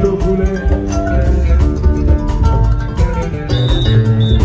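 Live West African band music led by a plucked kora, with drums keeping a steady beat.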